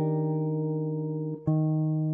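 Clean electric guitar playing a jazz comping chord, an Ebmaj7 voicing at the sixth fret, left to ring. It is cut off briefly and struck again about one and a half seconds in.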